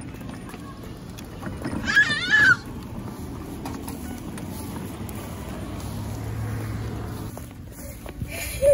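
Radio Flyer wagon wheels rolling over brick pavers and then smooth concrete: a steady rumble with light clicking from the paver joints. A child gives one brief high squeal about two seconds in.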